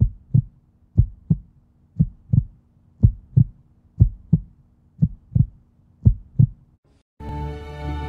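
A heartbeat, with seven paired lub-dub thumps about one a second over a faint low hum. It stops shortly before the end, and music comes in.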